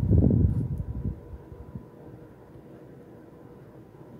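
Low rumbling handling noise on the recording device's microphone for about the first second as the camera is moved, fading out. A faint steady hum follows.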